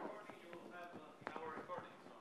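Faint handling noise from a clip-on microphone being moved and tucked into a pocket: soft rustling and a few sharp clicks, with a distant voice faintly underneath.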